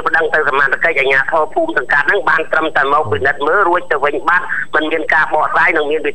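Continuous speech in Khmer, a broadcast news voice talking without pause; no other sound stands out.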